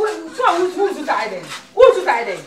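Speech: women talking.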